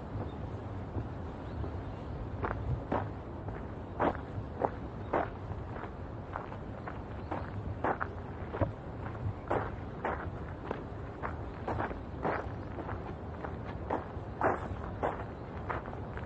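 Footsteps on a garden path, about two steps a second, starting a couple of seconds in and going on steadily, over a low steady background rumble.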